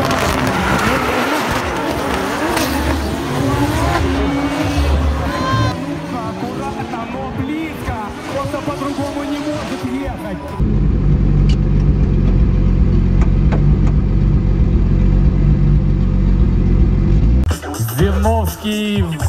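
Drift cars' engines revving with wavering, gliding pitch and tyres squealing through a tandem slide. About ten and a half seconds in the sound cuts to an in-car camera: a deep, steady engine drone heard inside the cockpit, which stops shortly before the end.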